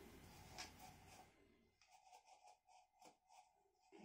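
Near silence, with faint soft rustles of cotton macramé cord being handled as a plant pot is fitted into the hanger.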